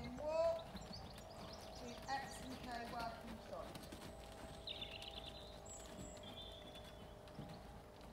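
Hoofbeats of a grey pony moving around an arena on a loose surface, with indistinct voices over the first few seconds.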